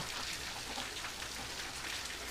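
Heavy rain falling steadily, with rainwater pouring off the roof spouts and splashing onto the pavement.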